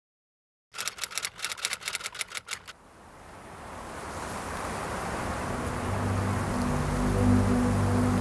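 A quick run of typewriter keystrokes, about fifteen clicks over two seconds, as the title types out. A hiss then swells steadily, and music with held low notes comes in near the end.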